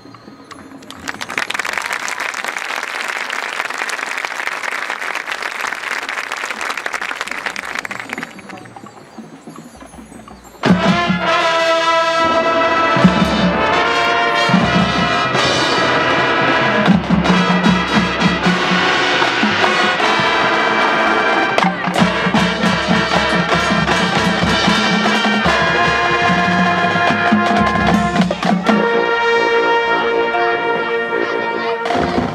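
Marching band: for several seconds an even, hiss-like wash of noise, then a short lull, then the full brass section and percussion come in loudly and suddenly about eleven seconds in, playing sustained chords with percussion hits.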